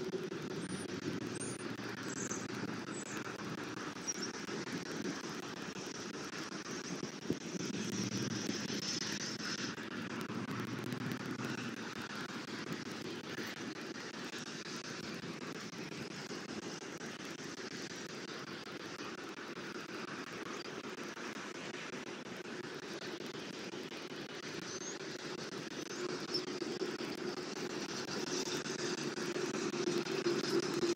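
Steady outdoor background noise: a low hum with a light hiss above it. A few faint, short high chirps come in the first few seconds, and a single brief click comes about seven seconds in.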